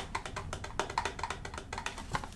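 Fingernails tapping and handling a cardboard box of rolled gauze: a quick, irregular run of small clicks.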